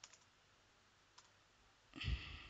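A few faint computer keyboard keystrokes, isolated clicks against near silence, as a word is typed.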